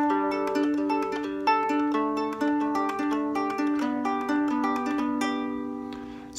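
Hobo Fiddle three-string cigar box guitar, tuned root-five-root, fingerpicked quickly in a looping riff of single plucked notes over a droning low string, about five notes a second. The bass note shifts about two seconds in, and near the end the last notes ring out and fade.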